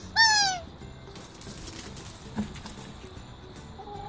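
Rubber squeaky Christmas-tree chew toy squeezed by hand: one short, high squeak that falls in pitch just after the start, after which only quiet outdoor background remains, with a faint tap past the middle.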